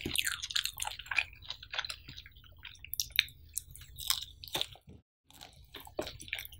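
Close-miked chewing of a mouthful of cheese pizza, with many small clicks and smacks of the lips and mouth. The sounds are busiest in the first two seconds and sparser after, with a brief silent gap about five seconds in.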